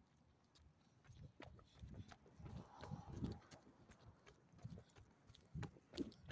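Faint, irregular low thumps and rubbing right at the microphone, with a few sharp clicks, starting about a second in.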